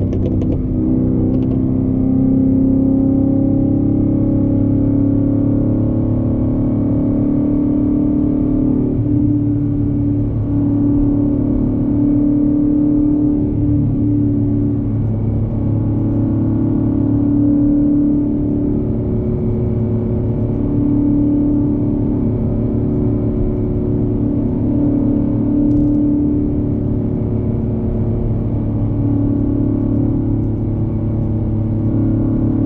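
Ford Mustang GT's 5.0 V8 heard from inside the cabin, running at steady revs on the highway with a continuous low drone.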